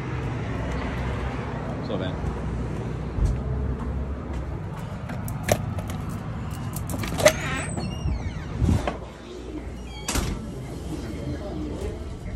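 Steady outdoor traffic rumble with a few sharp handling knocks, then a car door opening and shutting about ten seconds in.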